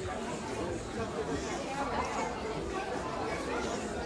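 Indistinct chatter of several people talking in a shop, no one voice clear.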